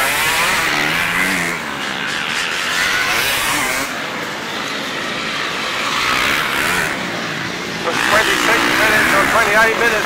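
Several enduro dirt bikes riding past one after another, their engines revving up and down through the gears. The revving is loudest and busiest near the end, as another bike comes close.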